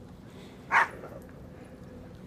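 A dog gives one short bark a little under a second in.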